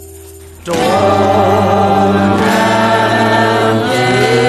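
A song: soft held chords, then a little under a second in the full accompaniment and singing come in much louder, the voice held with vibrato.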